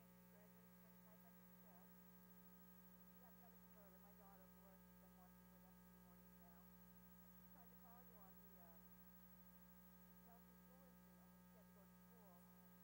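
Near silence: a steady low electrical mains hum, with faint, indistinct wavering sounds beneath it.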